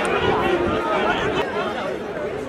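Several men's voices talking over one another in chatter and calls, with no single voice standing out.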